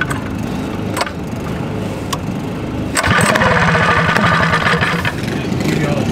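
A minibike's small pull-start engine being cranked on its recoil cord. About halfway through it turns over in a rapid, louder stretch lasting about two seconds, while another small engine runs steadily underneath.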